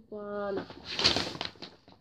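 A short steady low tone near the start, then rustling and light clicking scrapes of a clear plastic French curve being shifted over drafting paper, loudest about a second in.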